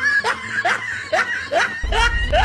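A snickering laugh of four short, squeaky rising notes, about two a second, with a low rumble coming in near the end.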